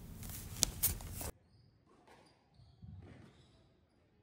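Squash ball being played in a rally: two sharp knocks close together, under a second in, over faint hall noise. After about a second and a half the sound cuts out to silence.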